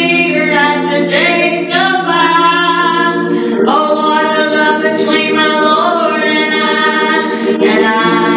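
A woman singing a slow worship song into a microphone through a PA, holding long notes over a sustained low accompaniment that shifts about halfway through.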